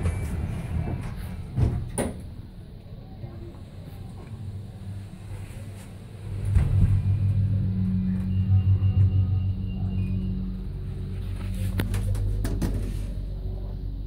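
Oakland passenger lift: a couple of knocks as the sliding doors shut about two seconds in, then from about six seconds in the lift's drive starts with a low steady hum and rumble as the car travels between floors.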